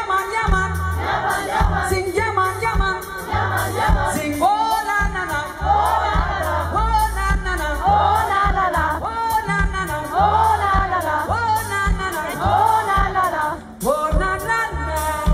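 Live pop band playing with a steady bass line while a male singer sings. From about four seconds in, many voices join, singing repeated rising-and-falling phrases: the audience singing along.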